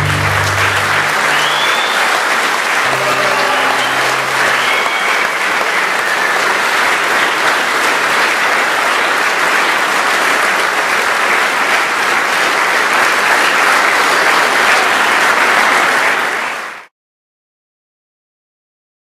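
A large audience applauding, with the last notes of the music ending about a second in. The clapping stays strong and steady, then cuts off suddenly near the end.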